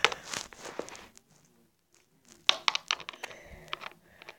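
Small plastic toy figurines being handled and set down on a wooden table: quick clicks and taps close to the microphone, in a burst over the first second and again from about two and a half seconds to near the end.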